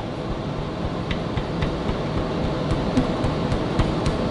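Steady shop background noise with a few faint, widely spaced clicks from a ratchet slowly turning the engine's crankshaft by hand to find top dead center.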